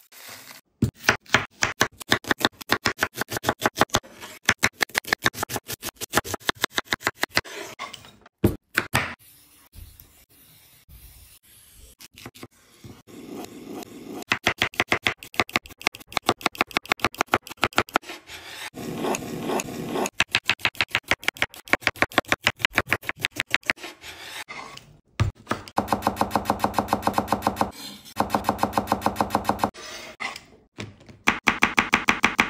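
Chef's knife chopping on a bamboo cutting board in quick, even strokes, several a second, dicing crisp cucumber and then slicing and dicing a tomato. A quieter stretch of a few seconds comes about a third of the way through.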